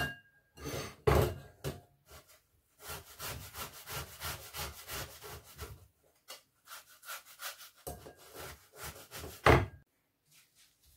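Boiled potato being grated on a hand grater: runs of short rasping strokes, about three a second, with a sharp knock about a second in and a louder one near the end.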